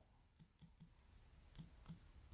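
Faint clicks of typing on a smartphone's on-screen keyboard, a short series of light taps about three a second.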